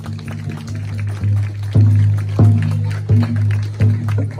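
Water drums made of metal pots with tied-on heads, struck in a steady slow beat about every two-thirds of a second. Each stroke gives a deep, ringing, pitched boom that carries on between strokes.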